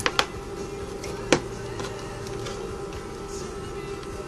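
Faint steady background music with held tones, and a single sharp click about a second in, from a multimeter test lead or coax connector being handled.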